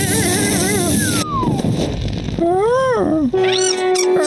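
Cartoon soundtrack of wordless character vocalizations and sound effects: a hissing crackle of electric sparks for about the first second, then a long falling whistle-like glide and short sing-song voice sounds that rise and fall in pitch.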